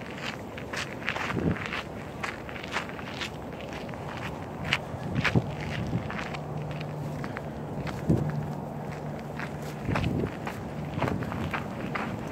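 Footsteps of a person walking on a paved road, an irregular run of light scuffing steps. A low steady hum sounds through the middle of the stretch.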